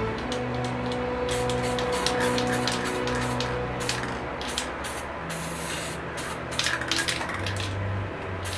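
Aerosol spray paint can hissing in many short bursts, with brief gaps between them.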